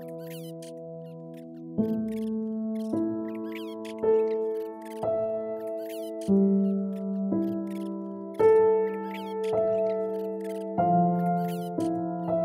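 Slow, calm piano music, a new note or chord struck about once a second and left to ring, with quick high chirps sounding over it.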